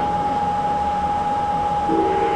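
Steady background hiss with a constant high-pitched whine, the kind of steady hum a fan or electronics give off in a small room.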